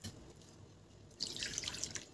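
Liquid in a pan of rasam: faint at first, then a soft trickling splash about a second in, like the last of the poured water running into the pan.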